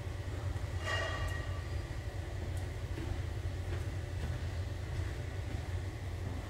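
A steady low rumble with no speech, and a brief faint pitched sound about a second in.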